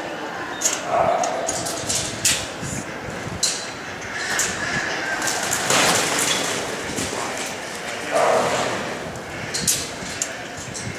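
Australian Shepherd barking twice while working ducks, about a second in and again near the end, with a few sharp knocks in between.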